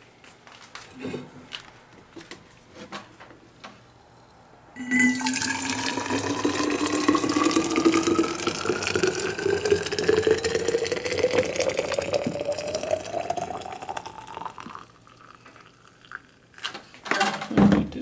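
Water pouring into a stainless-steel vacuum thermos for about ten seconds: a rushing splash with a tone that rises steadily as the bottle fills. A few quiet handling clicks come before it, and a louder knock near the end.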